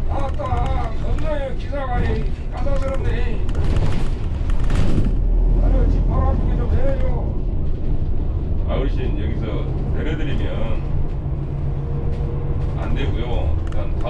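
Korean voices arguing over the steady engine and road rumble of an intercity coach, heard from inside the cabin. A louder burst of noise with a deep rumble comes about four to six seconds in.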